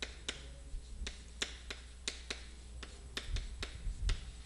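Chalk tapping on a blackboard as Korean characters are written stroke by stroke: a run of sharp, irregular clicks, about three a second.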